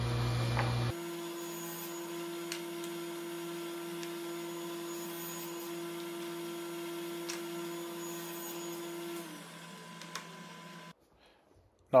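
Table saw running with a steady hum, on sped-up footage, as small pieces are crosscut on a sled. A low rumble drops out about a second in. Near the end the main tone sags as the blade winds down, and the sound then cuts to near silence.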